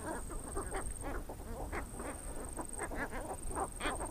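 Dense chorus of short, overlapping animal calls, many each second, over a steady high-pitched whine that drops out briefly once or twice.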